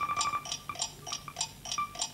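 Game-show countdown clock sound effect: electronic ticking about four times a second. A pulsing beep tone runs under the ticks until about half a second in, then breaks into a few short beeps.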